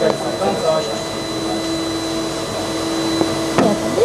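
Steady whir of laboratory equipment running, a fan-like rush with a low hum and a thin high whine held throughout.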